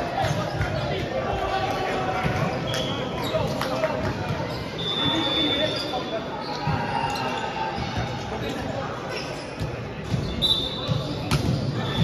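A ball bouncing on a wooden sports-hall floor, with players' voices throughout and the echo of a large hall.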